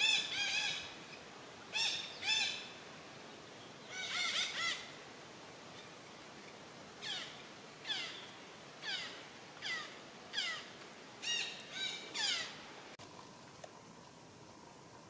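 Parakeets calling: a few bunched calls in the first five seconds, then a regular run of about nine short downward-sliding calls, roughly one every 0.6 seconds. The calls stop about a second before the end.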